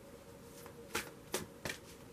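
Tarot card deck being shuffled by hand: a few short, soft card slaps, starting about a second in.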